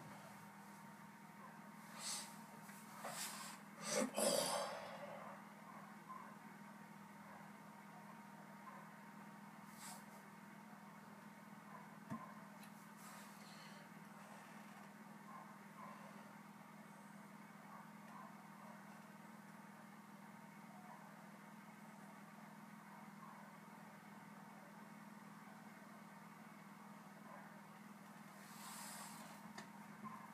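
Quiet room tone with a steady low hum, broken by a few short breathing sounds from a person close to the microphone in the first few seconds; the loudest is about four seconds in, and a couple of fainter ones come later.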